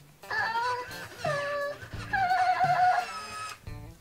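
Hatchimals WOW Llalacorn interactive toy making high-pitched electronic babbling sounds in several short phrases with wavering pitch, over soft guitar background music.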